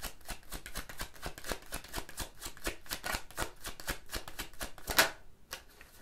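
A tarot deck shuffled by hand: a quick, dense run of soft card clicks and flicks, with one louder snap of the cards near the end.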